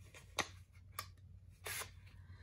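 Small kraft-paper envelope handled and a sticker sheet slid out of it: two faint ticks, then a short paper rustle near the end.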